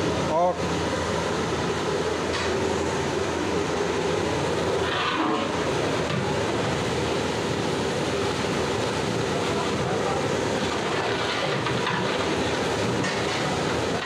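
Steady rushing noise of a large aluminium pot of watery masala gravy boiling hard over its burner.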